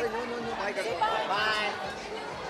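Speech: voices saying "bye-bye" over background chatter.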